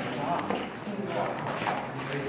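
Several boys' voices talking over footsteps of people running across a studio floor.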